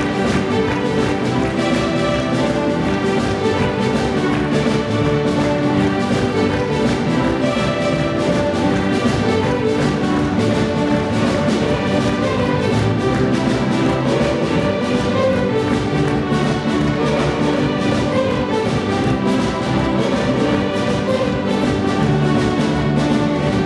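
Live youth fiddle orchestra playing a kwela tune: massed fiddles with cellos and double basses over a steady drum-kit beat, with acoustic guitar and accordions.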